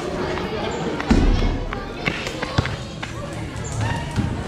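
A basketball lands hard about a second in, then bounces with a few sharper knocks on the paved outdoor court, over background music and voices.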